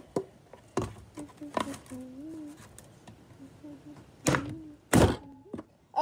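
Kitchen knife jabbing at the side of a clear plastic pop bottle, trying to pierce it: five sharp knocks and crackles of the plastic, the loudest two near the end, with a short strained hum in between.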